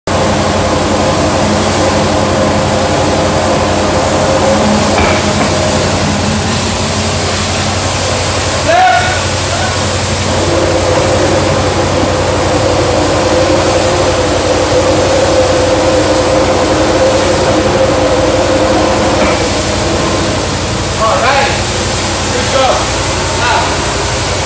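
Large electric blower fan that keeps an inflatable air-race pylon inflated, running with a steady rush of air over a constant motor hum. Brief voices come in about nine seconds in and again near the end.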